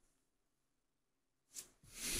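Near silence: room tone, with one faint brief sound near the end.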